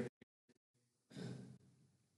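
A man's short sigh, a breath out into the microphone about a second in, after two faint clicks.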